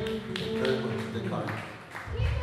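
End of a live blues band's song: held notes ringing out, cut by several sharp taps, with a man's voice through the PA.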